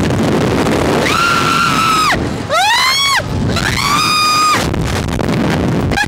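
Loud wind rushing over the microphone of a ride-mounted camera as a SlingShot reverse-bungee ride flings its riders. High-pitched screams come over it: a long held scream about a second in, a rising scream near three seconds, and another held scream around four seconds.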